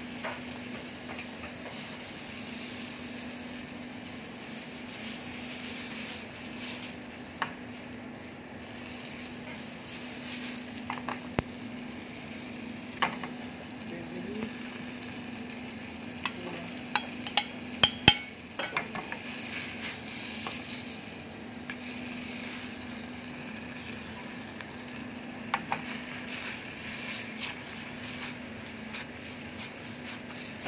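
Spaghetti and tuna sizzling in a metal pan over a high gas flame as they are stirred and tossed, a steady frying hiss with scattered clinks and scrapes of the utensil against the pan. The loudest knocks come in a quick cluster a little past the middle.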